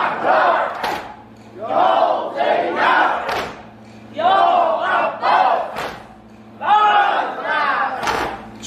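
A crowd of men chanting a short phrase together in unison, repeated about every two and a half seconds, with a sharp slap near the end of each phrase: the mourners' chanted response and rhythmic chest-beating of a Shia sineh-zani.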